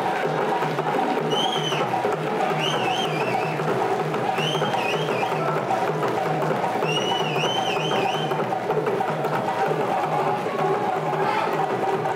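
Live djembe ensemble playing a fast, steady rhythm, the drum strokes dense and even. A high warbling tone cuts through in four short phrases over the first eight seconds or so.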